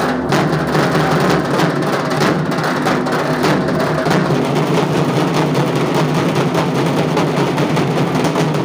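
Several dhaks, the large barrel-shaped Bengali festival drums, beaten together with thin sticks in a fast, unbroken rhythm of dense strokes.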